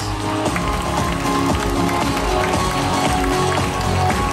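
Background music with a steady beat, played over the stage sound system.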